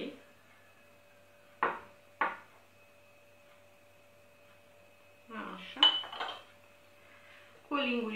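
A metal teaspoon clinking against small glass bowls as olive oil is spooned out: two sharp clinks about two seconds in, then a quick cluster of clinks around six seconds.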